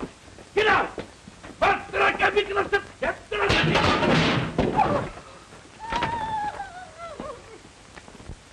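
Wordless raised voices in a comic scuffle, with a loud, noisy clatter about three and a half seconds in that lasts about a second. A long falling tone follows about six seconds in.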